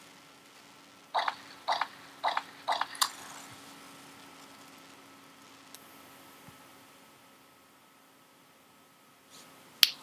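A run of five short, sharp clicks about half a second apart, starting about a second in, then a faint steady hum with one more click near the end.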